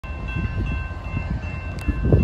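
Railroad grade-crossing warning bell ringing steadily, with several high ringing tones, over a low uneven rumble.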